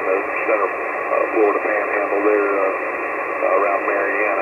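A man's voice received over a 2-meter single-sideband radio, thin and narrow-sounding, with steady band hiss behind it.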